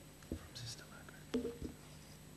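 Quiet breath and mouth noises close to a microphone: a faint breathy hiss early on, then a few soft clicks and a brief low murmur about one and a half seconds in.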